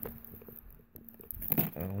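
Faint handling noise of a shrink-wrapped plastic Blu-ray case being turned in the hands, with a few soft clicks and scrapes over a faint steady hum. A man's voice starts near the end.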